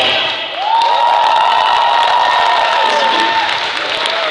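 Audience applauding and cheering as the song ends. The backing music cuts off in the first half second, and a single voice holds one long high cry for about three seconds over the clapping.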